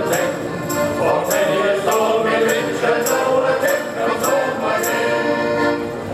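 Male shanty choir singing together in harmony, with a tambourine jingling on the beat about every 0.6 seconds.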